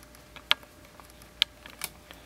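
Handling noise: a few light clicks and taps as small items and papers are moved on a tabletop. There are two sharper clicks, one about half a second in and one near a second and a half, then a couple of smaller taps near the end.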